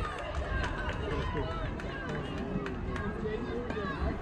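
Indistinct voices of spectators and players calling out and chattering across a youth baseball field, several overlapping, with a few short clicks and knocks mixed in.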